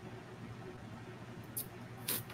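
Faint room tone with a low steady hum, and one short, sharp click about a second and a half in.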